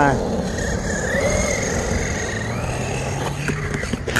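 Earthquake 8E electric RC monster truck driving on asphalt: a thin motor whine that wavers up and down with the throttle over a steady rush of tyre and wind noise.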